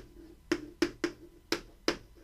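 Chalk clicking and tapping against a blackboard while writing: about five sharp clicks, each followed by a short low ring from the board.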